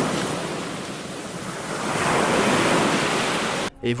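Ocean surf: a steady rush of breaking waves that eases about a second in, swells again, and cuts off abruptly near the end.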